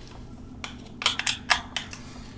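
Hard plastic grinder body and AA batteries being handled as the batteries are fitted into the battery holder. It is quiet for the first second, then there are several light clicks and taps in the second half.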